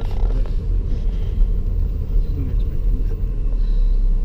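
Steady low rumble of a Holden Commodore's engine and tyres heard from inside the cabin while it is being driven through a turn.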